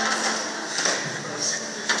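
A handheld microphone being passed from one person to another, with a sharp handling knock near the end and faint voices in a reverberant hall.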